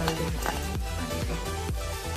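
Background electronic dance music with a steady beat of about four beats a second.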